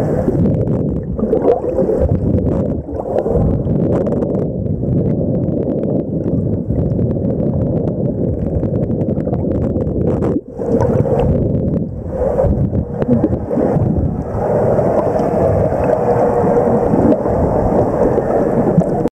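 Underwater noise picked up by a submerged camera: a steady, dense low rumble of water moving past the housing, with scattered sharp clicks. The noise dips briefly about ten seconds in.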